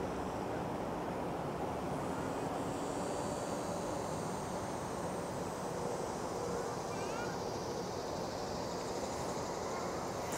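Steady outdoor background rumble with a faint, slowly wavering engine drone, such as distant traffic.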